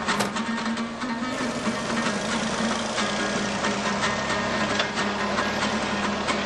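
Daewoo garbage compactor truck's diesel engine running steadily as the truck pulls away, with background music over it.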